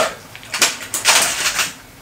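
Rustling and scraping handling noise from a guitar being lifted and moved around, in a few noisy bursts that start about half a second in and stop shortly before the end.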